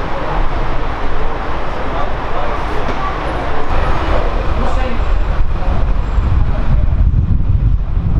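Street ambience: indistinct voices of people talking close by over traffic noise, with a heavy low rumble coming in about halfway through.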